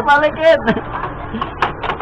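A man's voice talking, with a few short clicks in the second half as the buttons of a drinks vending machine are pressed.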